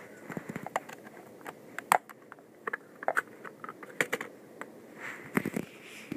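Irregular clicks and knocks of hard plastic as a Mega Bloks drop pod toy is handled and its panels are opened, loudest about two seconds in and again around four seconds in.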